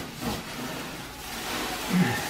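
Plastic wrapping rustling and crinkling as a boxed appliance is handled and pulled out of its bag and foam packing.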